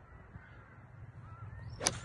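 A single sharp crack of a golf club striking the ball off the turf near the end, during a swing in the step-in drill. Under it, a steady low outdoor rumble and faint bird calls.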